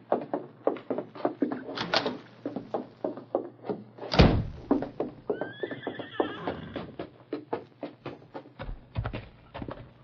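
Radio-drama sound effects: a quick, steady run of knocks, a heavy thud about four seconds in, then a horse whinnying for about a second.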